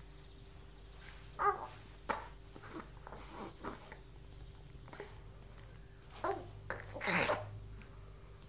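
A three-month-old baby making a few short grunts and snorting breaths, with the loudest, harshest one near the end.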